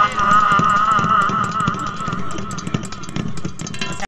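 Unaccompanied male folk singing: a man holds a long wavering note in a Saraiki/Punjabi song over a fast, regular percussive beat. The held note trails off in the second half while the beat carries on.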